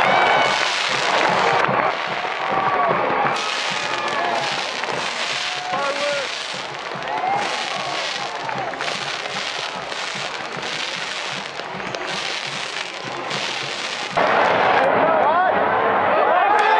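Pyrotechnic fireworks crackling and bursting over a cheering, shouting stadium crowd. The noise gets suddenly louder near the end.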